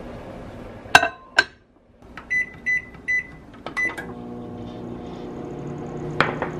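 Microwave oven shut with two knocks, then four short keypad beeps, and the oven starts heating with a steady hum.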